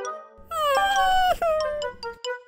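Cartoon cat character's wordless, meow-like vocalisation, a drawn-out sound that steps down in pitch, over light cartoon music.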